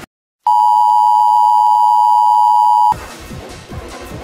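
The music cuts to silence, then a loud, steady, single-pitched electronic alert beep sounds for about two and a half seconds and stops abruptly, and the music comes back in.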